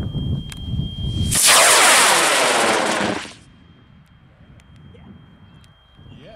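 A CTI I297 Skidmark high-power rocket motor igniting under a 4-inch Honest John model rocket. About a second and a half in, after a low rumble, a sudden loud rushing roar of the motor burning at liftoff lasts about two seconds, then drops away sharply as the motor burns out.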